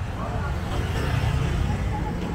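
Street ambience: motor traffic passing on a town street, with a steady engine and tyre rumble that swells briefly mid-way, and passersby talking nearby.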